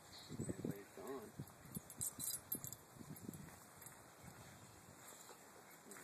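Faint, indistinct voices talking in short snatches over quiet outdoor background, with a few light clicks about two seconds in.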